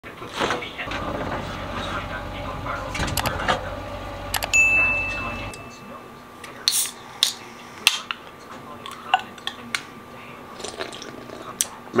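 A refrigerator door being opened, with a low steady hum for the first few seconds, then a series of sharp clicks and snaps as an aluminium drink can is handled and cracked open.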